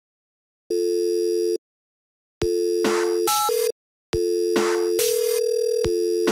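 A low telephone-line tone sounds in pulses of about a second on and a second off. About two and a half seconds in, it holds on under sharp bursts of noise and short higher beeps, as an electronic track builds on the tone.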